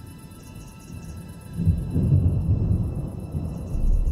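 Ambient electronic music interlude: faint sustained high tones with a deep, noisy rumble that swells up about a second and a half in and stays loud.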